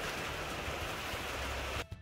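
A steady, even hiss with no distinct events, which cuts off suddenly near the end.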